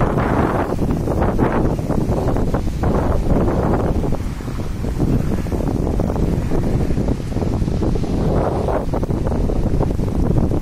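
Strong wind buffeting a phone microphone, a dense low rumble that swells and eases in gusts.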